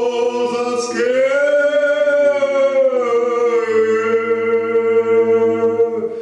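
Two men's voices singing a slow Cossack folk song a cappella. They draw out long held vowels, gliding up into a new sustained note about a second in.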